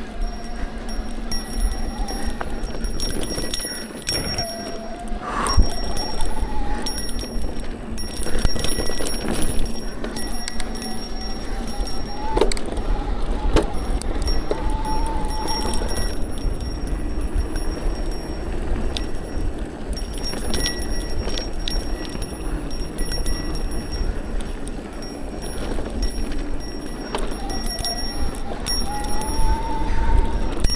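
Mountain bike rolling along a dirt singletrack: steady tyre and drivetrain noise with frequent clicks and rattles. A faint wavering tone comes and goes over it.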